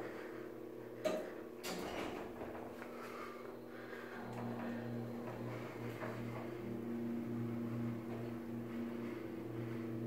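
Otis hydraulic elevator doors shutting with two short knocks about a second in, then, a few seconds later, the hydraulic pump motor starting a steady hum as the car rises.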